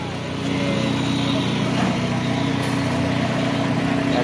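A small engine running steadily at a constant speed, likely powering the concrete mixer for the slab pour.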